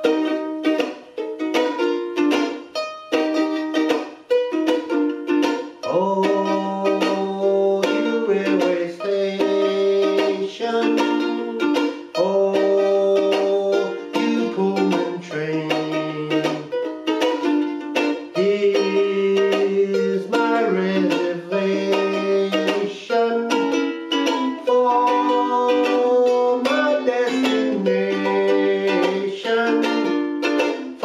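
Martin S1 soprano ukulele strummed in a steady rhythm. From about six seconds in, a man's voice carries the melody over it.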